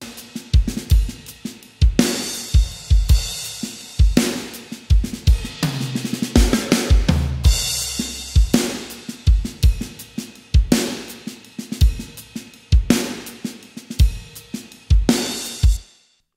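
Mixed drum kit playback from an indie pop rock track: kick, snare, hi-hat and crash cymbals playing a steady beat, stopping abruptly near the end. The snare, brightened with extra highs, is heard with and without the Soothe 2 plugin damping its harshness.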